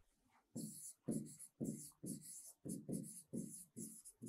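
A pen scratching across a writing board in a series of short strokes, about two a second, as handwritten words are written out. The strokes are faint and begin about half a second in.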